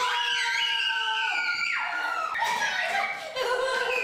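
Young people screaming in fright: one long high scream that falls slightly in pitch, then more screams overlapping.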